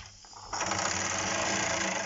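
Wilesco D101 toy steam engine starting to run about half a second in: a fast, even mechanical rattle with steam hiss.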